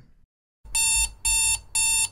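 Electronic alarm beeping: three short, evenly spaced beeps, about two a second.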